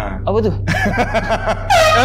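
Speech: a voice asking 'what's that?' and a loud, high-pitched voiced exclamation near the end, over a steady low hum.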